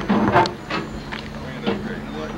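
Indistinct voices, with a loud burst about a quarter to half a second in that fits a person jumping down from a railing onto a wooden dock.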